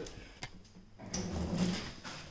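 Two sharp clicks about half a second apart, then soft knocks and rustling as gloved hands work at the exposed front brake and hub assembly.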